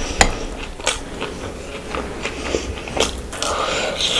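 Close-miked eating by hand: chewing and wet mouth sounds, with irregular sharp, moist clicks as she works through a mouthful of rice, curry and fish.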